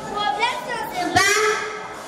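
Children's high-pitched voices speaking, in two short stretches of talk.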